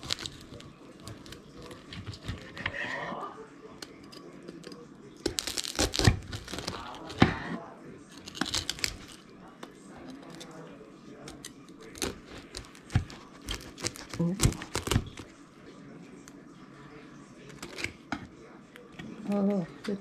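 A knife cutting through the crisp crackling skin of roasted pork belly on a wooden board: irregular bursts of loud crunching and crackling, heaviest about six to seven seconds in and again between twelve and fifteen seconds. The crackle is the sign of well-crisped skin.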